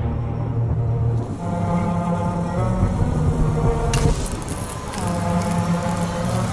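Instrumental passage of the hip-hop track: sustained pitched synth tones over heavy bass, with a short burst of noise about four seconds in.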